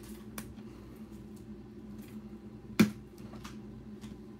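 Light handling of trading cards: a few faint clicks and one sharp tap nearly three seconds in, over a steady low hum of the room.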